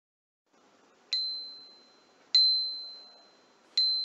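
A bright bell-like ding struck three times, a second or so apart: about a second in, again just past two seconds, and near the end. Each is a single high tone that rings out and fades.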